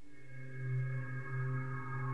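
A synth pad preset from the AIR Transfuser 2 plug-in, playing one held chord of steady tones that swells about half a second in and stops sharply at the end.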